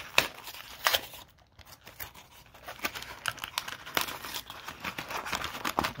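Thin cardboard card box being torn open by hand, with irregular ripping and crinkling. There are two sharper rips in the first second, a brief lull, then a run of smaller crackles as the box flaps and packs inside are handled.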